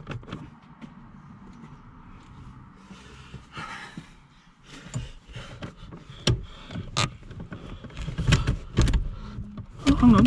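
Driver's seat of a 2008 Citroen C4 Grand Picasso being rocked back and forth on its stuck seat rails: irregular metal clunks and knocks from the seat frame and runners, growing louder and more frequent in the second half as a sticking rail starts to free off.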